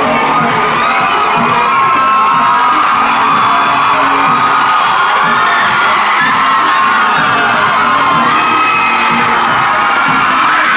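A large crowd of young people cheering and screaming continuously, many high voices overlapping, with music playing beneath.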